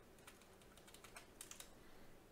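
Faint computer keyboard typing: a scattering of soft, irregular key clicks.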